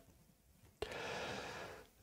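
Near silence, then a little under a second in a faint breath drawn in, lasting about a second and starting with a small click.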